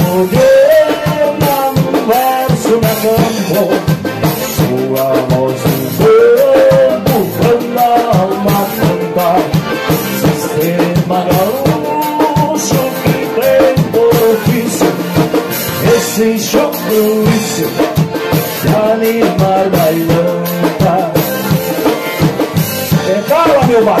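Live gaúcho band music: two piano accordions, acoustic guitar and drum kit playing a lively dance tune, the accordions carrying the melody over a steady beat.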